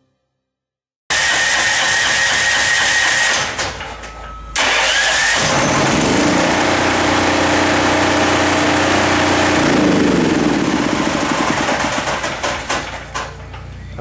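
HM8000 15 hp portable gasoline generator being started on its electric starter and running. The engine sound comes in abruptly about a second in, dips briefly around four seconds, then its note rises as the engine comes up to speed and holds steady before dropping and easing off near the end.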